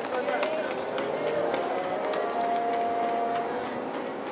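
Voices calling out across an outdoor athletics track, one call held for about a second past the middle. Under them, the sharp footfalls of two sprinters running on the synthetic track.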